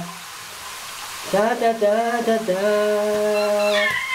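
A voice singing a long, steady "daaa" note that starts a little over a second in, with a soft hiss before it.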